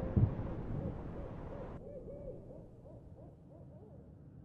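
Film sound design: a soft low thump, then a wavering tone that rises and falls about four times a second, fading away.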